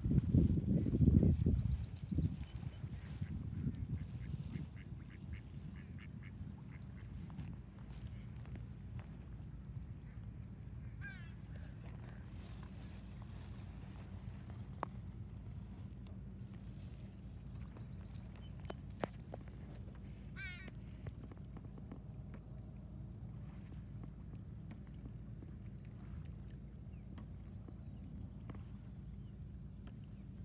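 Wind rumbling on the microphone, loudest in the first two seconds, with a duck quacking in two short raspy calls about eleven and twenty seconds in.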